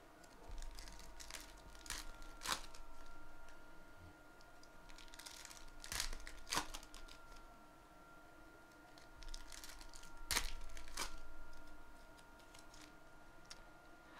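Foil trading-card packs being torn open and crinkled by hand, in three bouts of rustling with sharp crackles as the foil rips. A faint steady high hum runs underneath.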